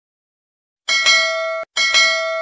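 Notification-bell sound effect ringing twice. The first ding comes about a second in and is cut off short; the second follows near the end and is left to ring out.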